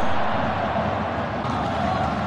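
Football stadium crowd noise from the stands, a steady hubbub that eases off slightly.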